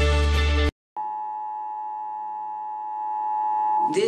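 Closing music cuts off abruptly under a second in. After a brief silence, a steady two-tone electronic alert tone holds for about three seconds: the Emergency Broadcast System attention signal.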